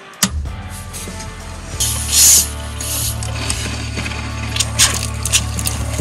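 A 12-volt RV fresh-water pump is switched on with a click and runs with a steady, pulsing low hum as it pumps RV antifreeze into the water lines. About two seconds in, the kitchen faucet is opened and liquid hisses out into the stainless sink over the pump's hum.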